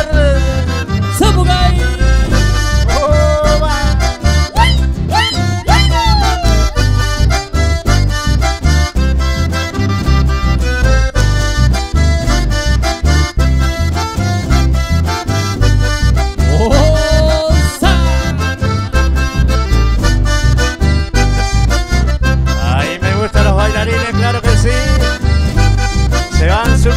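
Live folk music led by a button accordion playing the melody, over strummed acoustic guitar and bass with a steady dance beat.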